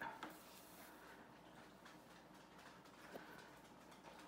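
Near silence, with a faint brief hiss of yarn being drawn through crocheted fabric as a seam is hand-sewn with a yarn needle, and a few faint ticks.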